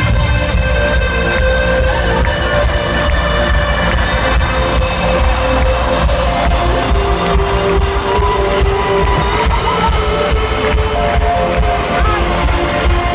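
Live rock band playing an instrumental passage with guitar, held notes and a steady drum beat, loud and heavy in the bass as picked up by a phone in the crowd.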